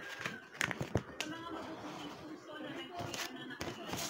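A sheet of white paper being folded and creased by hand against a tabletop. There are a few sharp crackles and taps in the first second or so, and more around three seconds in.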